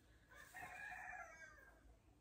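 A rooster crowing once, faint and distant, one call of about a second and a half that rises and then falls in pitch.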